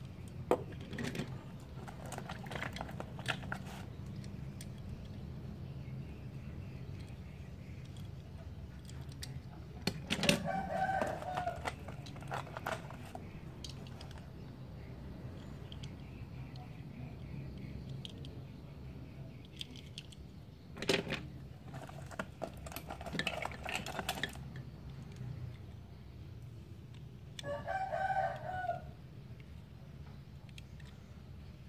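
A rooster crowing twice in the background, about ten seconds in and again near the end. Small clicks and taps come from die-cast toy cars being handled.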